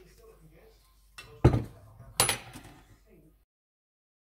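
Kitchen handling sounds: two sharp knocks about three-quarters of a second apart, the first the louder, as a glass olive oil bottle is set down on a wooden chopping board and a metal mesh sieve is taken up with a clink. The sound cuts off suddenly near the end.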